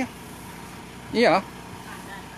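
A single short spoken word or exclamation from a man's voice about a second in, its pitch dipping and then rising, over steady low background noise.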